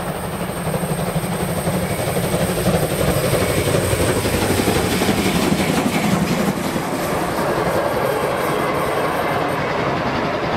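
A steam locomotive passing close while working hard under load, loudest in the first six seconds, followed by its train of passenger coaches rolling past on the rails.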